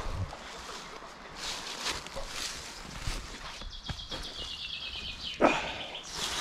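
Footsteps on a dirt woodland path, and a small songbird singing a fast trill that falls in pitch for about a second and a half past the middle. A loud bump comes near the end.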